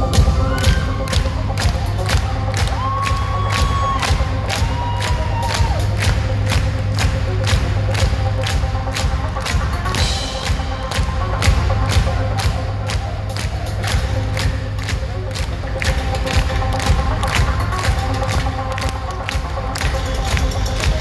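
Live rock band playing loud, with heavy bass and a steady driving beat of about two to three strokes a second, heard from within the audience. The crowd cheers along.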